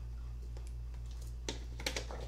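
A low, steady hum with a few faint, short clicks, about a second and a half in and again near the end.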